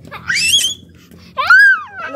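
Domestic tabby cat meowing twice: a short rising call near the start, then a louder arched meow past the middle.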